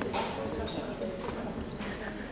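Audience chatter in a theatre hall: many voices talking at once, with a few scattered knocks such as seats or footsteps.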